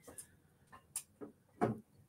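A few faint, scattered clicks and light taps of handling noise, one a little louder near the end.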